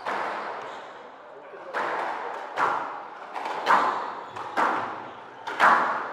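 A squash rally: the ball is struck by rackets and smacks off the court walls in a series of sharp hits, roughly one a second, each ringing briefly in the hall.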